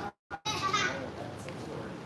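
Background voices: children and people talking in a busy room, after a brief cut to total silence right at the start.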